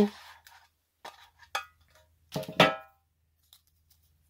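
Fingers rummaging in a metal tin for a folded paper name slip: a few light knocks, and one louder metallic clang with a brief ring about two and a half seconds in.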